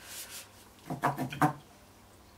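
A card being slid and turned by hand across a work surface, a soft rubbing in the first half second. About a second in comes a brief murmured voice.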